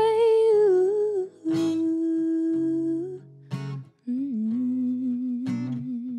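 Female singer holding long sustained notes, the first one wavering and falling in pitch, over an acoustic guitar strummed about every two seconds.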